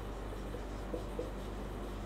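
Felt-tip marker writing on a whiteboard: faint strokes over a steady low hum.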